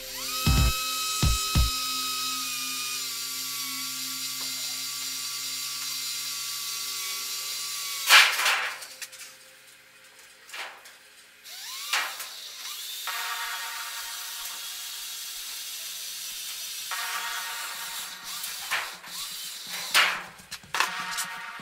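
Cordless drill running on a galvanised sheet-metal box: a steady motor whine for about eight seconds, then a sharp knock, then a second, shorter run of the drill a few seconds later.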